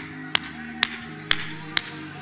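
One person clapping hands in a steady beat, about two claps a second, four claps in all, over soft sustained music.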